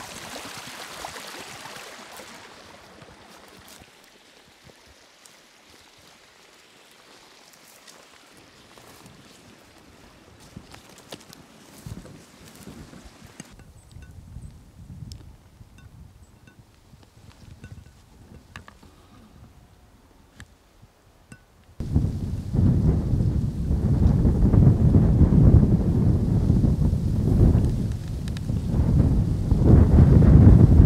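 Faint rustling and light ticks of people walking through dry grass. Then, suddenly, about two-thirds of the way in, a loud, low rumble of wind buffeting the microphone.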